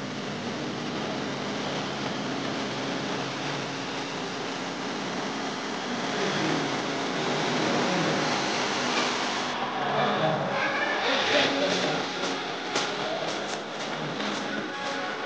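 Steady background hubbub of many people talking at once in a room, with a few short clicks or knocks in the last few seconds.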